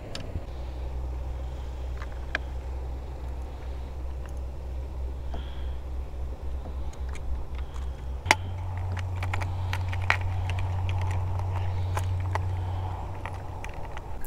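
Scattered light clicks and rattles of lures and a plastic tackle box being sorted by hand, busiest in the second half. Under them runs a steady low rumble.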